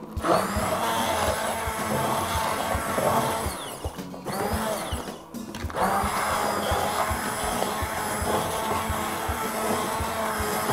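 Handheld immersion blender running in a pot of thick potato soup, puréeing it. The motor briefly drops out twice, about four seconds in and again just after five seconds.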